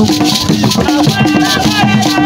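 Traditional drumming music with rattles shaken in a steady rhythm, a low drum note repeating about twice a second, and voices singing over it.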